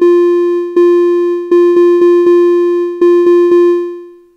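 Notation-software playback of a rhythm on one repeated synthesized pitch at about 80 beats a minute: two quarter notes, then a triplet, a quarter note and a second triplet ("jam, jam, strawberry, jam, strawberry"). The last note fades out near the end.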